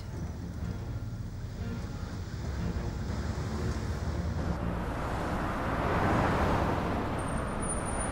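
Steady road and engine rumble of a moving car. A rushing swell builds about halfway through, peaks a little after six seconds and fades, like another vehicle passing close by. A brief thin high whine sounds near the end.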